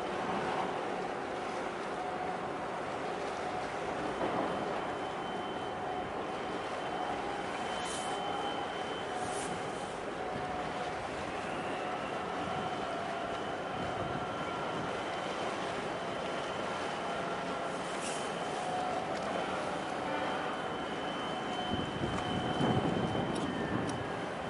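Steady background hum of distant engines and machinery, with faint held tones and a few brief high clicks.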